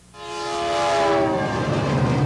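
Diesel freight locomotive horn sounding a chord of several tones as the train passes close by, sinking slightly in pitch, over the rumble of the passing train.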